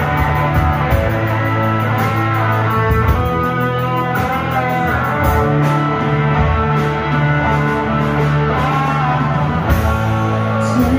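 Live rock band playing a Southern rock ballad: electric guitars sustaining melodic lines over bass guitar and drums, with regular cymbal strokes.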